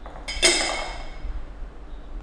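Glass teapot lid clinking against the glass pot as it is lifted off: one sharp clink about half a second in that rings and fades over about a second.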